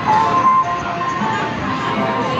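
Simple electronic jingle melody of the kind a coin-operated kiddie ride plays, with the chatter of an arcade crowd behind it.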